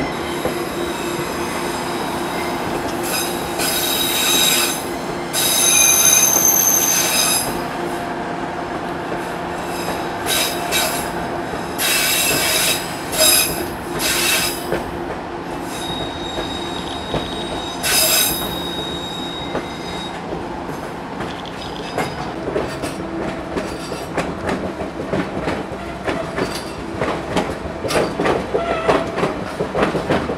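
Passenger cars of the White Pass and Yukon Route narrow-gauge train running with a steady rumble, their wheels squealing high-pitched several times in the first twenty seconds. Over the last third the rail clatter turns into sharper, quicker clicks.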